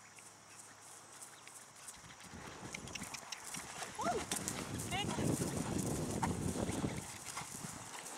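A horse cantering on grass through a jump grid: hoofbeats grow louder as it comes close, with the loudest stretch from about four seconds in as it takes the jump and passes, then fade near the end.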